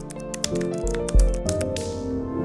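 Computer keyboard typing: a quick, uneven run of key clicks over a background music jingle.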